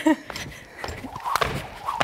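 A jump rope being skipped: feet landing and the rope slapping the floor, in sharp thuds about every half second, as a beginner attempts double unders (one high jump with two rope turns).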